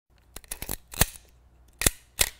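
A handful of short, sharp clicks and knocks at uneven intervals, several close together about half a second in, the loudest about a second in, and one more near the end.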